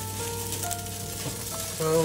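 Background music with a few held notes, over the hiss of coconut milk and squash simmering in a pot.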